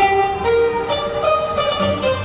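Music: a melody of held notes, changing pitch about every half second.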